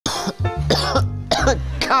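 Several short coughs in quick succession from people choking on thick smoke in a room, over background music with a low bass line.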